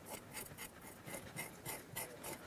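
A kitchen knife scraping the scales off a whole sea bream on a wooden chopping board: faint, short strokes, about four a second.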